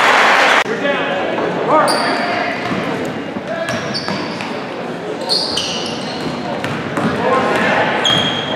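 Basketball game sounds in an echoing gymnasium. Loud crowd noise cuts off sharply less than a second in, followed by spectators' and players' voices, a ball bouncing on the hardwood, and short high squeaks from sneakers on the court.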